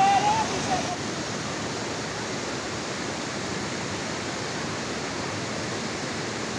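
Waterfall pouring over rock in high, fast flow, an even, steady rush of falling water.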